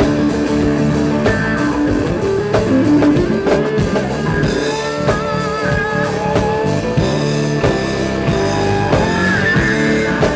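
Live blues-rock band playing: an electric guitar line with bending notes over a drum kit.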